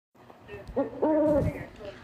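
An owl hooting twice: a short hoot, then a longer, steady-pitched hoot.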